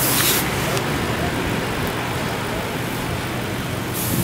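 Steady hum of a vehicle engine idling close by, over constant outdoor traffic-like noise, with a brief hiss at the very start.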